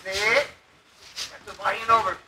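Speech only: two short bursts of talk with a quiet pause between.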